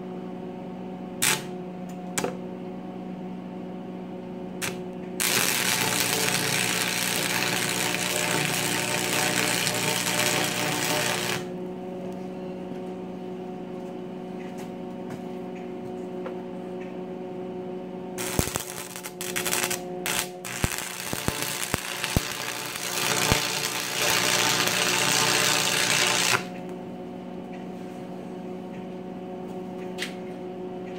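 Stick welding with 6011 rods on an AC stick welder at 90 amps, tacking rusty steel pipe. Two short clicks of the rod being struck come early. A crackling arc then runs for about six seconds, and later there are sputtering restarts that settle into a short steady crackle, all over the welder's steady hum.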